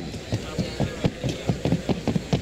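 Hoofbeats of a Colombian paso fino mare trotting on a dirt track: a quick, even run of low thuds, the strongest about twice a second.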